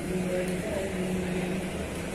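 Scania K360 coach's diesel engine running at low speed as the bus rolls slowly by, a steady low drone.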